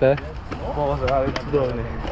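People talking: conversational speech, with a low rumble underneath.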